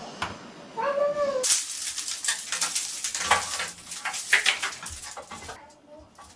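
A short, high, cat-like call about a second in, then about four seconds of loud, irregular rustling and clattering as laundry is handled. The clattering is from clothes and hangers being moved about.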